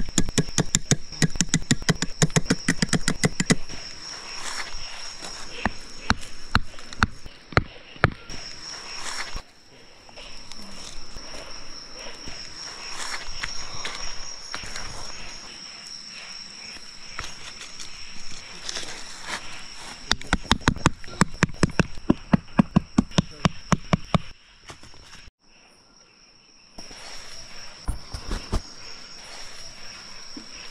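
Night insects keep up a steady high-pitched trill that drops out briefly a few times. Over it come loud, rapid runs of clicks in the first few seconds and again about twenty seconds in.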